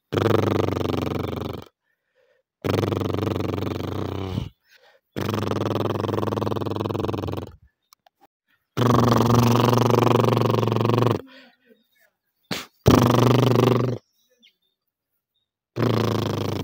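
Horses nickering close by: five low, drawn-out calls, each about one and a half to two and a half seconds long, with short silent gaps between them.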